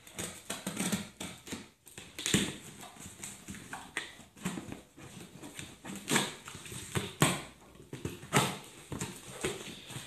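Knife slitting the packing tape on a cardboard shipping box, then the cardboard flaps being pulled open: an irregular run of sharp clicks, tape crackles and scrapes.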